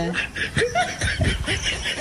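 Laughter: a chuckle in short, quickly repeated bursts.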